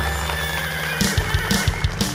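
A horse whinnying over the song's instrumental music. About a second in, quick low knocks start in a galloping rhythm.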